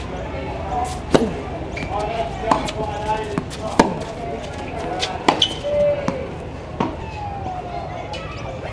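A tennis serve followed by a baseline rally on a hard court. Sharp pops of racket strings striking the ball and of the ball bouncing come about every second or so, around six in all.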